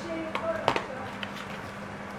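Light clicks and taps of a phone's cardboard box and its bundled charging cable being handled, with one sharper click just under a second in.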